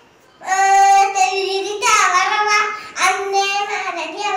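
A young boy singing a Tamil film song on his own voice, with no accompaniment. He comes in about half a second in and sings three phrases of long held notes.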